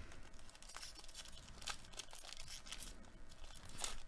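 Faint crinkling of a foil trading-card pack wrapper being handled and torn open, the tearing rising a little near the end.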